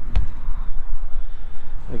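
Low, uneven rumble of wind on the microphone, with one sharp click shortly after the start.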